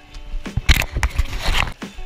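Legs wading through a shallow river current, with two loud splashing surges about a second apart.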